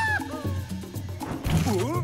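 Cartoon background music with a steady low beat, under a cartoon monkey's wordless voice: a long held cry ends right at the start, and a sound that dips and then rises comes near the end.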